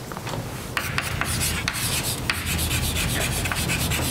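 Chalk writing on a blackboard: a continuous scratchy rubbing dotted with short taps as the chalk strikes and drags across the board.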